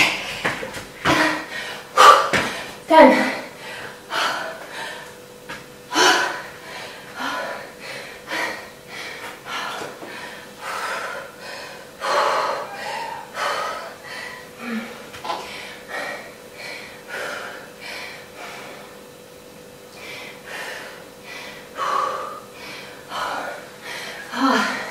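A woman breathing hard after a hard interval set: loud gasping breaths and exhales, roughly one a second, slowing a little in the middle. A thump right at the very start.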